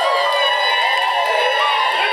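A crowd cheering and shouting over music, many voices overlapping at once. The sound is thin, with no bass.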